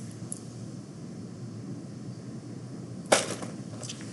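A stack of ten small magnet pellets dropped down a white tube through a wire coil lands with one sharp clack about three seconds in, ringing briefly after. A fainter click follows near the end, and a soft click comes right at the start.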